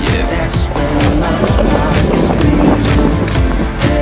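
A pop-rock song with a steady beat plays over the rolling of a stunt scooter's wheels on concrete.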